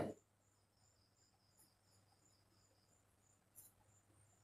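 Near silence with crickets chirping faintly in the background, about two to three chirps a second, and a second, lower-pitched cricket trilling until about three seconds in. A faint click comes near the end.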